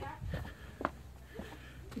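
Faint footsteps on block paving with a single sharp tap a little before the middle, over a quiet outdoor background.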